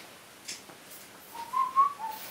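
A few short whistled notes, stepping up in pitch and then dropping, starting about a second and a half in.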